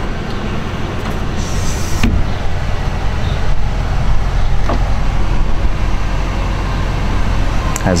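Steady low rumble of the Range Rover Sport Supercharged's 4.2-litre supercharged V8 idling, heard from inside the cabin, with a brief hiss and a few light clicks.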